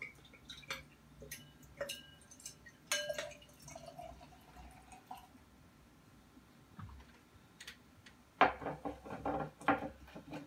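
Beer poured from a bottle into a glass: a faint trickle and splash with small clicks of glass. Near the end there is a louder cluster of knocks and rubs as the glass is handled on the table.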